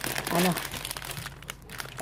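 Plastic grocery packaging crinkling and rustling in an irregular run as items are rummaged through and lifted out of a cardboard box.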